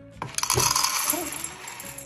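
Dry cat kibble poured from a plastic scoop into a stainless steel bowl: a loud rattling clatter of pellets hitting metal that starts about a third of a second in and tails off near the end.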